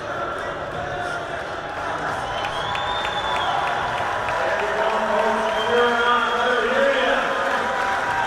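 Spectators at an indoor track meet cheering and shouting, a mass of overlapping voices that grows steadily louder.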